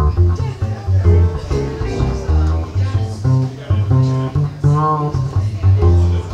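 Instrumental swing-blues passage from a piano and acoustic upright bass duo: plucked upright bass notes stand out loud and low, with piano chords above them.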